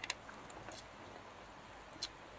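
Faint, scattered small clicks and crackles of scaly rattan fruits being picked from a bowl and peeled by hand.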